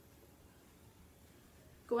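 Near silence: faint room tone, with a woman's voice starting just at the end.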